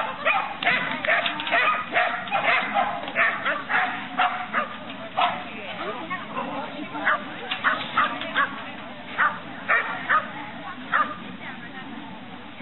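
A dog barking in short, sharp barks, a quick string of them over the first few seconds, then single barks spaced about half a second to a second apart.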